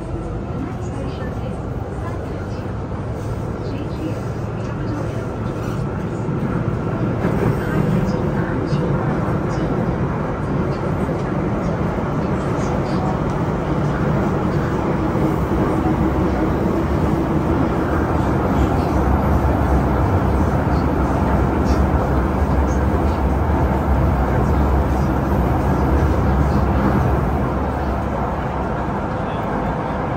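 Beijing Subway Line 10 train heard from inside the carriage while running: a steady rumble and hiss of wheels on the track. It grows louder over the first several seconds, holds, and eases slightly near the end.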